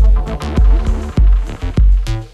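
Live acid techno from Roland TB-303 bass synthesizers and a TR-606 drum machine: a deep kick drum about every 0.6 s under interlocking, sequenced acid synth lines.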